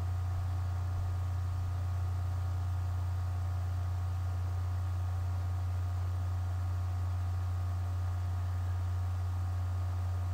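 Steady low electrical hum with a faint hiss and a few thin, steady higher tones above it, unchanging throughout: the background noise of a low-quality webcam stream recording.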